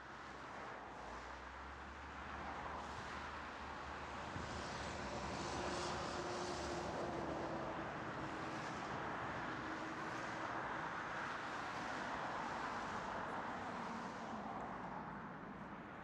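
Steady outdoor traffic noise, a hum of passing vehicles that fades in from silence and swells gently, with a faint steady tone for a few seconds in the middle.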